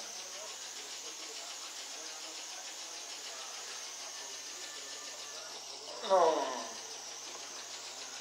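Home exercise bike (ergometer) being pedalled, its flywheel giving a steady, even whirring hiss.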